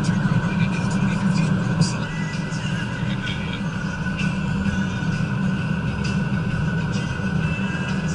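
A person's voice, with no clear words, over steady road and engine noise inside a moving car.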